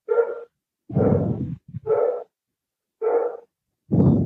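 A dog barking four times, short separate barks about a second apart, coming over a video call's audio.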